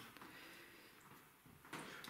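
Near silence with a few faint soft clicks and squelches from cherries being pitted by hand over a plastic bowl.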